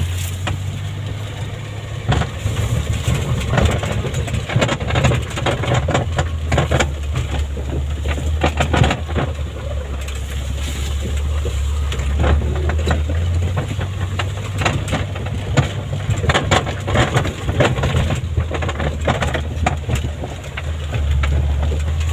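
A small vehicle's engine running with a steady low drone as it drives slowly over a bumpy dirt track, with frequent knocks and rattles from the body jolting over the ruts.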